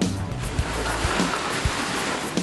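A steady rushing noise of rock breaking and falling as a tunnel boring machine's cutterhead breaks through the rock wall, over background music with a beat.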